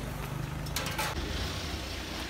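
A vehicle engine running with a steady low rumble, with a short hiss of noise about a second in.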